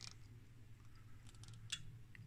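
Near silence with a few faint clicks and rustles about one and a half seconds in, from a circuit board being handled and turned in the hand.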